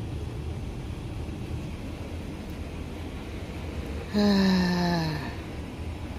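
A man's long, drawn-out "haaa" about four seconds in, falling in pitch over about a second: a weary sigh. Under it runs a steady low hum.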